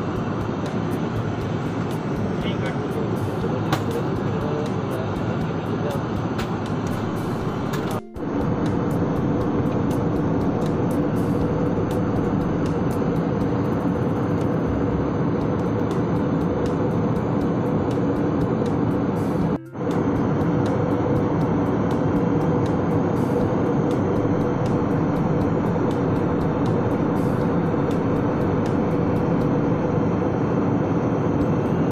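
Steady roar of jet airliner cabin noise in flight, with faint steady hums under it. It cuts out briefly twice, about eight seconds in and again near the twenty-second mark.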